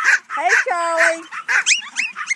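Pomeranian dogs whining and yipping in quick, high-pitched squeals that rise and fall, several overlapping. About halfway through there is one held lower note.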